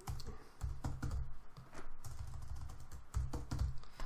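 Computer keyboard being typed on: irregular keystroke clicks in short quick runs.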